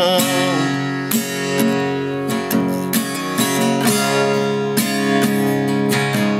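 Acoustic guitar strummed in an instrumental break, regular strokes ringing out chords. A held, wavering sung note fades out in the first half second.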